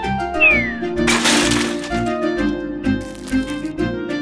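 Background music with a plucked-string rhythm. A short falling tone comes just before half a second in, and a brief hissing burst follows about a second in.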